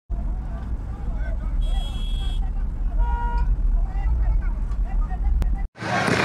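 Outdoor street noise at a riot-police clash: a heavy low rumble throughout with scattered voices, two short horn-like toots about one and a half and three seconds in, and a single sharp crack near the end before the sound cuts off suddenly.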